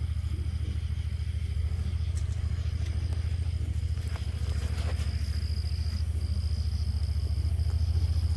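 Vehicle engine running nearby at low revs as it is turned around: a steady low rumble with an even pulse.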